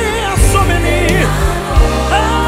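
Live Ghanaian gospel worship song: voices singing over a band with steady bass notes and a few drum and cymbal hits.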